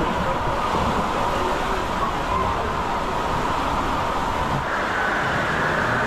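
Steady rushing, churning water with the echoing background chatter of a crowd in an indoor water park hall. The sound grows brighter near the end.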